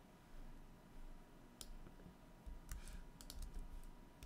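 Computer keyboard keystrokes and clicks: a single click about a second and a half in, then a quick run of keystrokes near the end, as a command is copied and pasted into a terminal.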